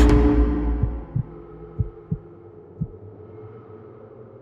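A loud suspense-score chord dies away over the first second, leaving a slow heartbeat effect in the soundtrack: low double thumps about once a second over a faint lingering tone.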